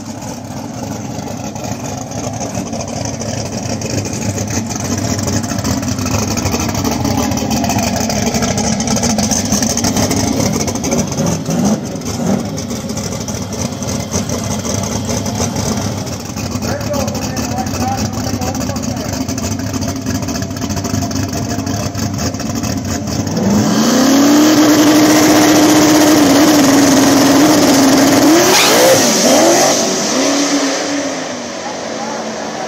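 Boosted small-block drag race car engines idling and revving on the track, with rising and falling revs. About 24 seconds in, an engine suddenly comes in much louder and is held at high revs for about five seconds, then swoops and falls away near the end.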